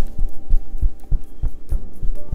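Bamboo paddle hairbrush patting a person's upper back through a sweater: a quick, steady run of dull, low thumps, about four a second.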